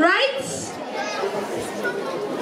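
Speech only: people talking, several voices overlapping in chatter, one voice rising sharply in pitch right at the start.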